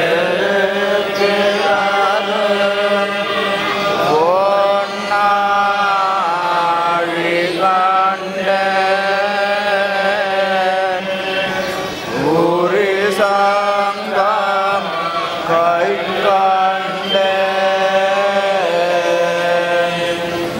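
Voices chanting Sanskrit devotional verses in long, held tones, sliding in pitch at the start of phrases.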